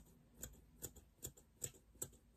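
Scissors snipping a thin strip of 2 mm headliner foam into small pieces: four faint, evenly spaced snips, about two and a half a second.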